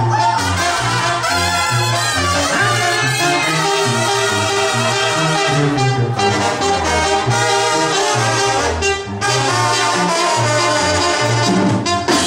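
Mexican banda music played loud through a sound system: trumpets and trombones playing over a bouncing, note-by-note tuba bass line, with a brief drop in level about nine seconds in.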